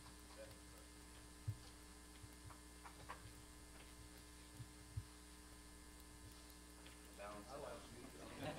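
Near silence: room tone with a steady electrical hum, a few faint knocks, and quiet voices murmuring near the end.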